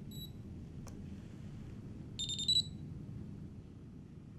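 Electronic beeps from a screwdriver's setting remote controller and controller unit: a short high beep at the start, a sharp click just under a second in, then a louder rapid chirping beep burst about two seconds in. The beeps signal the settings data being transmitted to the screwdriver. A faint low hum runs underneath.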